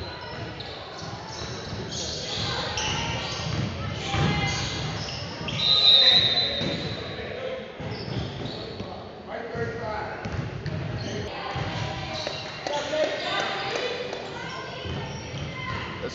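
A basketball bouncing on a gym's hardwood floor during play, with players and bench voices shouting. About six seconds in, a steady high whistle sounds for about a second: a referee's whistle stopping play for a foul.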